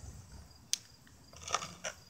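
Quiet background with one sharp click about two-thirds of a second in and a brief soft rustle near the end.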